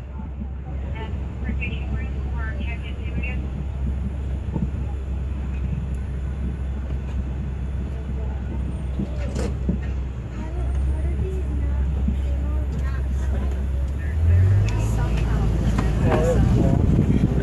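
Safari ride truck's engine running under way, a steady low rumble that grows louder about ten seconds in and again near the end as the engine note rises.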